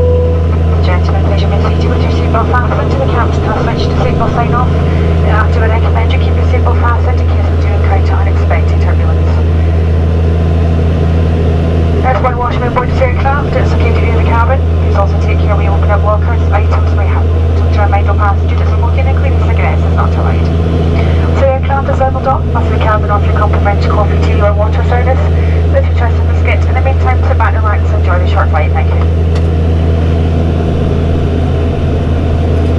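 Cabin drone of a Saab 340B's twin turboprop engines and four-blade propellers in the climb, heard from a seat by the wing: a loud, steady low hum that does not change.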